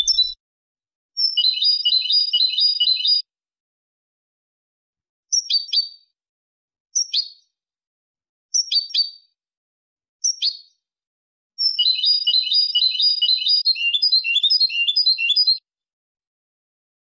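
European goldfinch singing Malaga-style song: a rapid high trill of about two seconds, then four single sharp down-slurred notes spaced about a second and a half apart, then a longer rapid trill of about four seconds.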